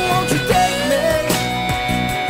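Rock band music playing a song's outro on a B chord, with a sliding lead line over held chords and regular drum hits.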